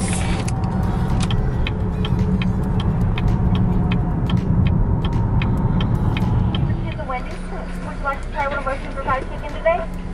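Steady low road and wind rumble inside a moving car with its sunroof open. About seven seconds in, the rumble drops away to a quieter background with voices.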